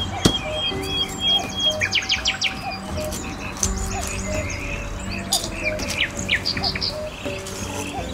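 Birds chirping with quick calls and a rapid trill over soft background music of long held notes. A single sharp knock comes just after the start.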